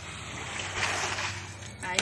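A floor squeegee pushing standing rainwater across a concrete rooftop slab: a wet swishing splash that builds about half a second in.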